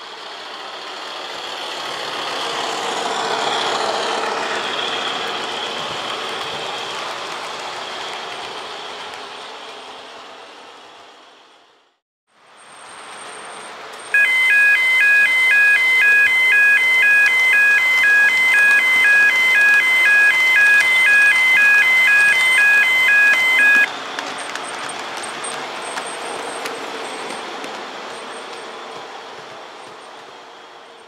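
Train running past with a steady rushing noise that fades in and out twice. In the middle a level crossing warning alarm sounds for about ten seconds, a loud multi-tone pulse about twice a second.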